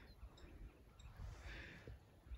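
Near silence: faint background ambience with a few soft ticks.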